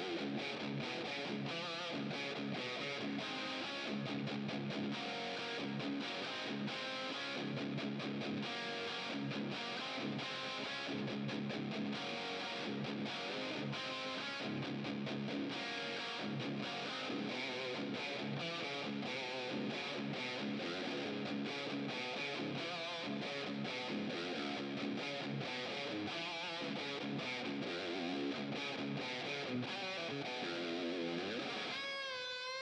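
Electric guitar played through a Mad Professor "1" distortion and reverb pedal: continuous, heavily distorted hard-rock riffing with many quick picked notes, at an even level throughout.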